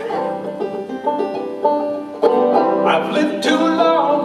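Banjo picked in a steady run of notes, accompanying a folk song. About halfway through, the sound gets suddenly louder and a man's singing voice comes in over the banjo.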